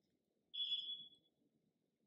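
A single brief high-pitched ringing tone that fades out in well under a second.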